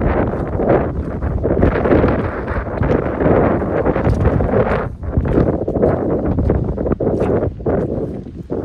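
Walking in snow boots through wet mud, steps about once a second, under a steady rustle of nylon rain pants and wind buffeting the microphone.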